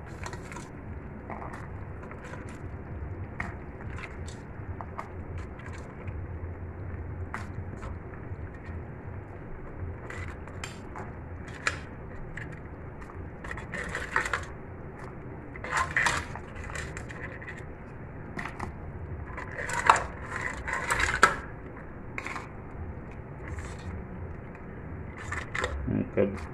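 Blue crabs being dropped into a pot of boiling broth, their shells clicking and clattering against each other and the aluminium pot. The clatters come scattered throughout, loudest in a few bunches in the second half, over a steady low background of the boil on the stove.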